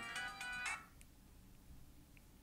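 A mobile phone's musical ringtone, a set of steady tones that breaks off less than a second in, leaving near silence.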